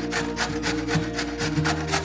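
A carrot being grated on a stainless-steel box grater, in quick, even rasping strokes at about six a second.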